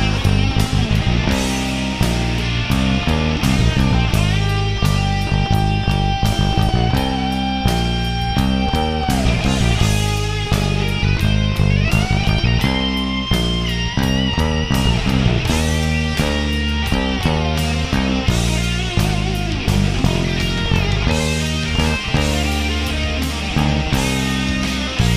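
Rock band recording at its guitar solo: lead electric guitar plays long held notes and bends over drums, with a five-string electric bass playing the bass line under it.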